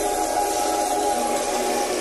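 Experimental electronic music: held synth tones over a steady wash of hiss, with little bass and no beat.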